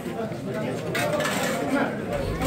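Crowd of men talking over one another, with the clink of metal ladles against steel pots and stainless-steel compartment trays as food is dished out; a brighter clink about a second in.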